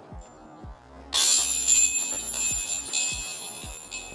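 A disc striking the hanging metal chains of a disc golf basket about a second in: a sudden jangle of chains that keeps ringing and slowly dies away.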